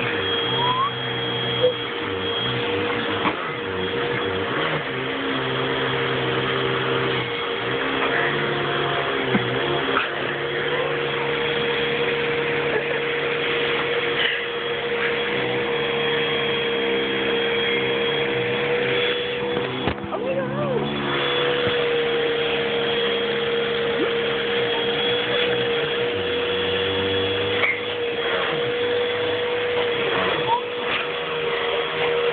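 Vacuum cleaner running steadily through a hose attachment, a constant motor whine over a rushing hiss of suction, as the nozzle is worked over flour on a sleeping person's face and clothes. About two-thirds of the way through, the whine briefly breaks and wavers before settling back.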